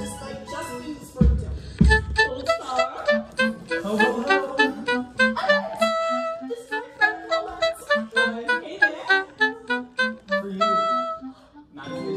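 Live pit orchestra playing a busy instrumental passage of a stage-musical number, with a woodwind close to the microphone playing quick runs of notes over a steady bass line. Two low drum hits sound about a second and a half in.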